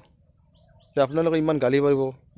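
Faint bird chirps in a pause of about a second, then a man's voice comes back in loudly and runs to the end.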